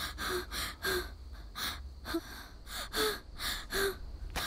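A woman gasping for breath in panic: a quick run of short, ragged gasps, several with a brief voiced catch in the throat.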